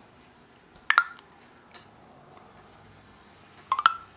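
Two short electronic beeps from a Samsung Intrepid phone's TellMe voice app, one about a second in and a quick rising two-note tone near the end, as the app stops listening and starts processing the spoken request.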